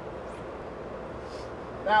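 Steady background machinery noise with a low hum, even and unbroken; a man begins speaking near the end.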